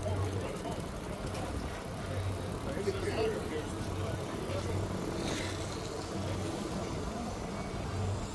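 Busy outdoor pedestrian-promenade ambience with indistinct distant voices, under a soft low thump that repeats about every 0.7 seconds.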